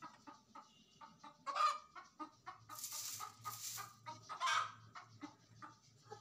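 Brown domestic hens clucking again and again, with louder calls about a second and a half in and again near four and a half seconds. Two short bursts of rustling noise come around the middle.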